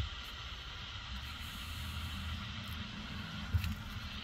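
Faint steady hiss over a low hum, with a soft knock at the start and another about three and a half seconds in.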